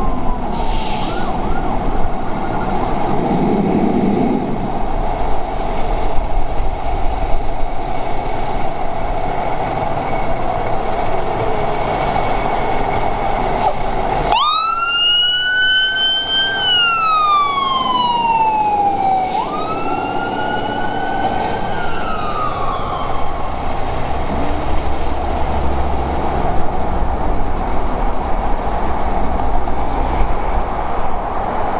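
Fire truck's electronic siren wailing in slow rising-and-falling sweeps over the truck's engine, with the deep tones of a Whelen Howler low-frequency siren. The sound changes abruptly about halfway through.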